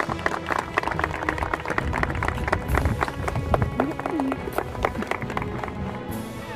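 Crowd of wedding guests clapping, with a cheer or two among the claps, greeting the couple's kiss.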